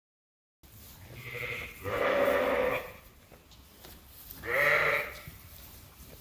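Sheep bleating in a barn: a long bleat about two seconds in and a shorter one near the end.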